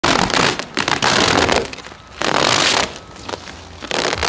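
Clear plastic track wrap film being ripped off a car's front bumper and headlight, crackling loudly in three long tearing pulls with short pauses between, and a fourth starting near the end.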